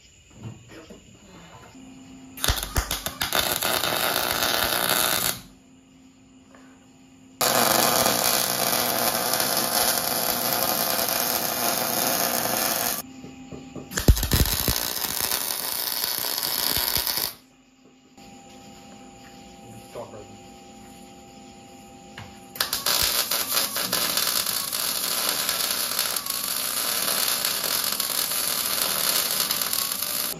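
MIG welder arc crackling as steel plates are welded onto a truck frame, in four runs: about three seconds, about five seconds, about three seconds, and a last run of about seven seconds near the end.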